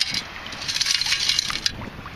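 Gravel and shell rattling and grinding in the basket of a long-handled metal-detecting sand scoop as it is shaken in shallow water to sift out the sand, a dense crackle with one sharper click near the end.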